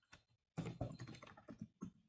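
Faint typing on a computer keyboard: a quick, irregular run of keystrokes starting about half a second in, as a short word is typed.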